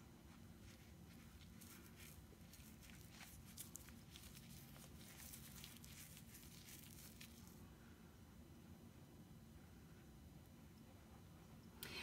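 Near silence, with faint wet squishing and small splashes as a hand squeezes a foaming bubble bar in bath water, mostly in the first seven or so seconds.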